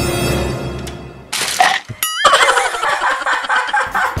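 Tense background music fades out, then about a second in a sudden loud burst as the plastic toy shark's head springs up and its jaws snap shut, the shark catching the player. A comic sound effect with a sliding pitch follows, and lively music runs on to the end.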